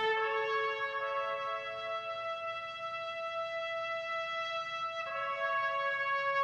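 Slow brass music of long held chords. The chord changes about a second in and again near the end.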